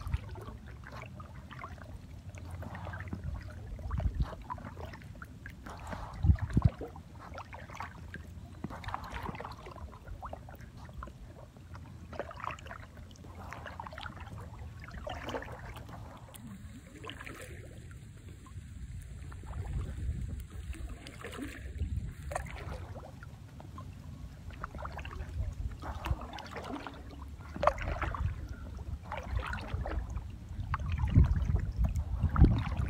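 Aluminium kayak paddle dipping into lake water in steady alternating strokes, splashing and dripping about every one and a half seconds, with a few low thumps.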